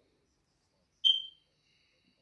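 A single short high-pitched beep about a second in that fades over about half a second, followed by a fainter lingering tone.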